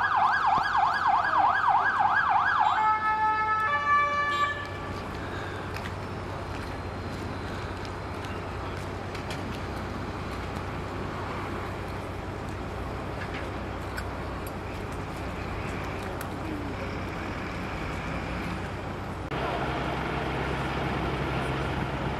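Emergency vehicle siren in a rapid rising-and-falling yelp, which stops about three seconds in and breaks into a few stepped tones as it cuts out. A steady low rumble follows and gets louder near the end.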